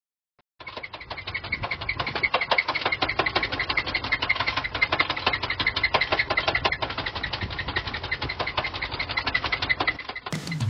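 The 1979 Dodge D100's 318 V8 running with a rapid, regular knocking rattle from inside the engine, several knocks a second, starting about half a second in.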